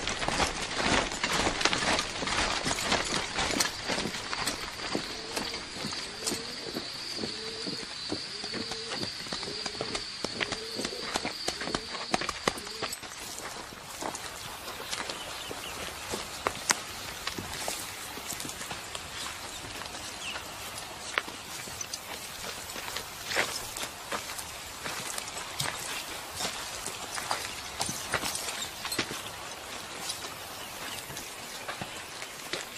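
A column of soldiers marching off on foot: many overlapping footsteps and knocks of gear. For several seconds a rhythmic squeak repeats a little faster than once a second, and a high steady tone stops just before the halfway point.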